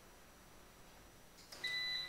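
Near silence, then near the end a short steady electronic beep of about half a second: a Windows system notification sound as a 'Local Area Connection' network alert pops up.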